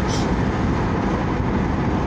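Steady car road noise heard inside the cabin: a low rumble with an even hiss of tyres and wind.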